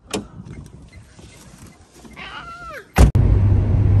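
A few faint clicks and a short wavering high-pitched call about two seconds in, then a sharp knock about three seconds in, after which the steady low drone of a car driving on the highway, heard from inside the cabin, takes over.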